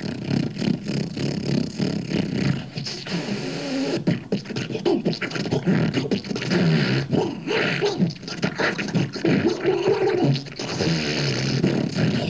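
Live beatboxing into a handheld microphone: fast, dense mouth percussion and vocal noises, with a held, wavering hum shortly before the end.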